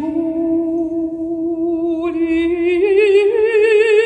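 A woman singing a cappella, holding long notes with a wide vibrato; the melody steps up to a higher note about three seconds in.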